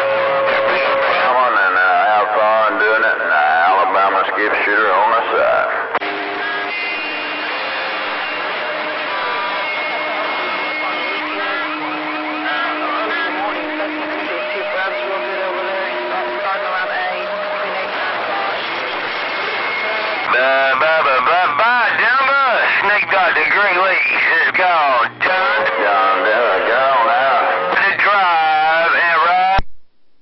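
Magnum CB radio receiving distant stations: several overlapping voices come through garbled and warbling, unintelligible, over static with steady whistling tones. The signals fade somewhat about six seconds in, come back stronger about twenty seconds in, and cut out just before the end.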